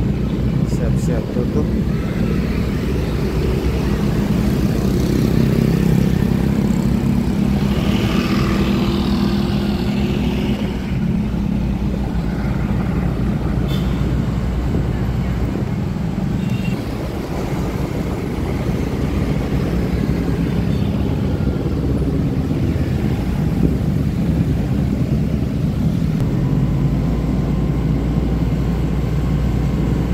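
Steady engine and road noise from a vehicle driving through city streets at night, with other cars and motorbikes passing.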